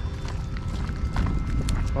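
Footsteps of a person and two dogs walking at heel on wet asphalt, with a few light clicks over a heavy low rumble on the microphone.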